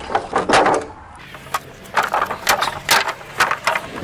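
Loose wooden pallet boards knocking and clattering against one another as they are lifted and set down: a few sharp knocks in the first second, then a quick run of them from about two seconds in.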